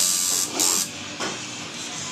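Two short, loud squirts from a hand spray bottle, about half a second apart, then a fainter third squirt a little over a second in.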